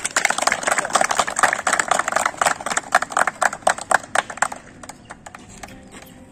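A group of people applauding, with dense clapping that thins out about four and a half seconds in, leaving a few stray claps.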